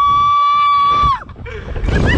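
A woman rider's single long, high-pitched scream on a slingshot thrill ride, held at a steady pitch and then dropping off a little over a second in. Rushing air and voices come back near the end.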